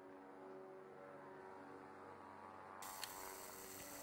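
A faint drone of several held tones over a light hiss, its pitches shifting slowly. A brighter hiss comes in about three seconds in, with a small click.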